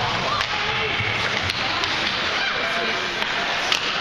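Ice hockey play in an arena: a steady wash of skates on the ice and crowd noise, broken by several sharp clacks of sticks and puck, the loudest near the end.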